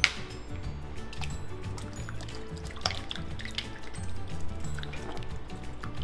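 Background music over a sharp click at the start, then faint liquid sounds. The liquid sounds are an egg poured into a steel mixing bowl of milk and yeast and stirred with a silicone spatula, with a few light clicks about three seconds in.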